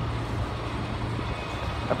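Steady low hum with an even faint hiss: constant background room noise, with no distinct event standing out.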